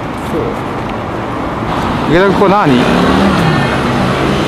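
City road traffic, cars running and passing, heard as a steady wash of noise. A brief voice cuts in about halfway, followed by a low steady hum.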